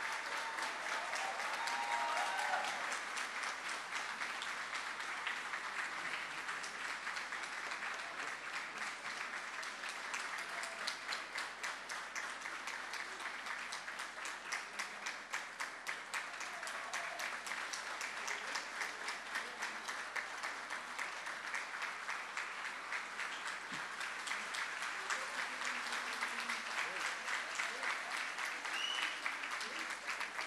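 Sustained applause from a large seated audience, many hands clapping steadily at an even level.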